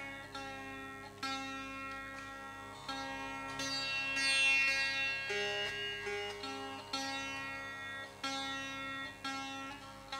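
Sitar playing a slow, unmetered passage of raga Charukeshi: single plucked notes about every second or so, each ringing on, over a steady tanpura drone.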